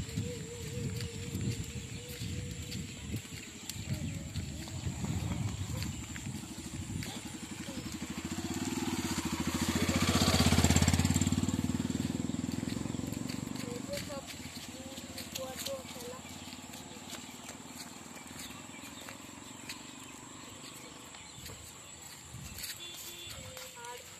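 A small motor vehicle passing by on a gravel road: its engine grows louder, is loudest about ten seconds in, then fades away.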